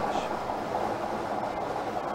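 Plastic lottery balls tumbling in a rotating clear acrylic draw globe: a steady rattling rumble.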